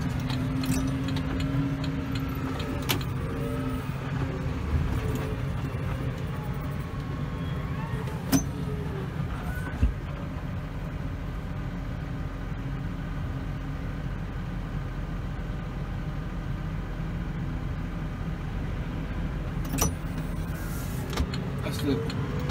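Tractor engine running steadily, heard from inside the cab as a constant low drone, with a few sharp clicks and knocks over it.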